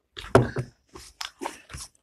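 Close-miked eating sounds: a quick run of short chewing and mouth sounds, with a louder knock about a third of a second in as a drinking glass is set down on the table.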